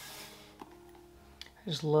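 A last stroke of a bristle shoe brush over a leather dress shoe, buffing off cream polish to a soft shine, fading out within the first half-second; faint background music follows and a man begins speaking near the end.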